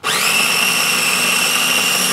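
A countertop kitchen appliance's electric motor switches on suddenly, spins up with a brief rise in pitch and then runs at a steady, loud whine.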